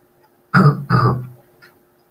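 A man clearing his throat twice in quick succession, two short voiced rasps about half a second apart.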